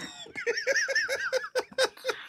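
Laughter: a quick run of short giggling pulses, about seven a second, with a high wavering pitch.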